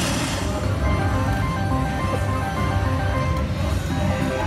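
Aristocrat Heart Throb Lightning Link slot machine playing a run of short electronic notes as its win meter counts up after a spin, over a low background din.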